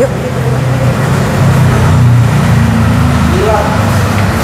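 A motor running with a steady low rumble, and a short burst of voice near the end.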